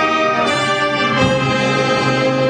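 Concert wind band playing a loud, sustained brass-led passage of a film-score arrangement, with full held chords; a new chord is struck a little past the first second.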